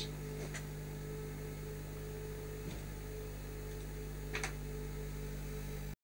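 Steady low electrical mains hum with a faint steady whine above it, broken by two faint short clicks, about half a second in and near the end; the sound cuts off abruptly just before the end.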